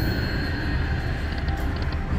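Fu Dai Lian Lian Dragon slot machine playing its electronic feature music as it switches into the Longevity free-games bonus. A steady held tone runs over a low rumble, with a quick run of chime-like ticks in the second half.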